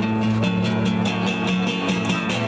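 Live rock band playing an instrumental stretch between vocal lines: strummed acoustic guitar over held low notes and a drum kit, heard through the open-air PA.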